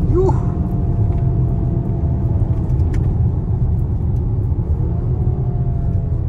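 Lamborghini Urus S's twin-turbo V8 and road noise heard from inside the cabin while driving, a steady low rumble with a faint engine tone above it.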